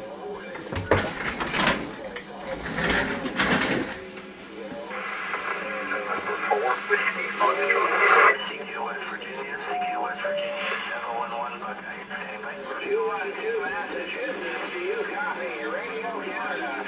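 Radio receiver picking up band-open skip chatter on the 10- and 11-meter bands. A few loud bursts of static come in the first four seconds. After that, faint, garbled voices come through the narrow radio audio over a low steady hum.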